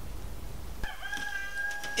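A rooster crowing: one long, held call that begins about a second in.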